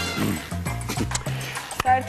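Television show's theme jingle with a steady bass line, a falling voice-like glide, and one sharp hit near the end as the jingle closes.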